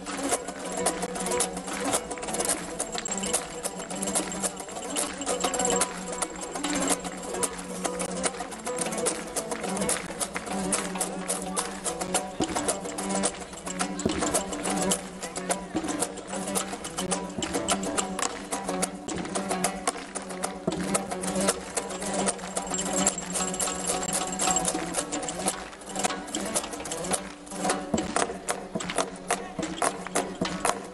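Uzbek folk dance music with a fast, steady, driving rhythm: a plucked long-necked lute over a frame drum (doira), with a held low note underneath.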